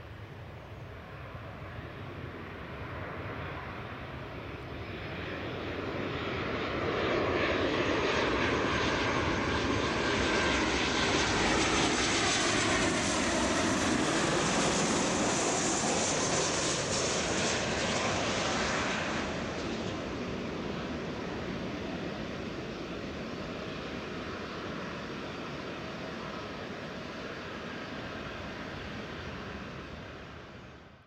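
Boeing 737-800 jet engines on final approach with gear down, growing louder as the aircraft nears and passes close by with a falling whine, then easing back to a steadier, quieter engine sound as it moves away.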